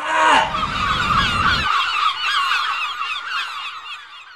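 Geese honking and cackling, many wavering calls overlapping, fading toward the end.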